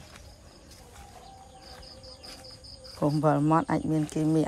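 Faint, high-pitched chirping that repeats rapidly for about a second in the middle of a quiet pause, like an insect's trill, over a faint steady hum. A voice starts speaking about three seconds in.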